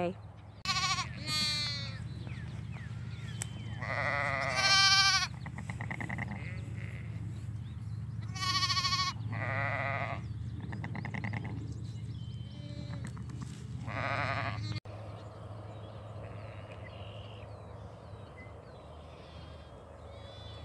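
Sheep bleating, ewes with newborn lambs: several short wavering bleats over the first fifteen seconds, then only faint steady field noise.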